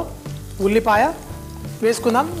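Chopped onion, carrot and garlic sizzling in hot oil in a frying pan, under background music with a voice.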